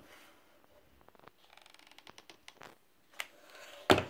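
Hands handling a Foamiran flower on a wire and craft bits on a tabletop make soft rustles, small clicks and a brief run of rapid ticks, then one sharp knock on the table near the end.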